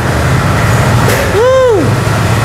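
A single drawn-out vocal exclamation, rising then falling in pitch like a 'wooow', about a second and a half in, over a steady low hum.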